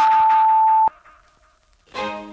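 A single steady electronic beep, about a second long, cutting off abruptly: the interval timer's signal that an exercise has ended. Then near silence until music starts again at the very end.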